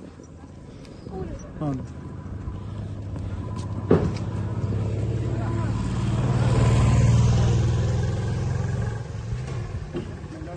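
A motor vehicle driving past close by: its engine sound builds over several seconds, is loudest about seven seconds in, and fades near the end. A sharp click about four seconds in.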